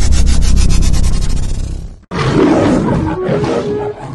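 Logo-intro sound effects: a loud, rapidly pulsing rumble that cuts off abruptly about two seconds in, then a lion's roar that fades as music notes begin near the end.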